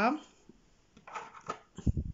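Hands handling small objects on a tabletop: a light click, then a short, dull thump near the end.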